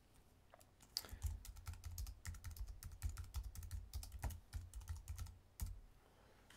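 Typing on a computer keyboard: a quick, uneven run of key clicks and soft key-bottoming thuds. It starts about a second in and stops just before the end.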